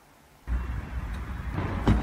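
A video clip's own outdoor location audio being played back from an editing timeline: loud, noisy ambience with a heavy low rumble. It starts suddenly about half a second in, with a sharp knock near the end.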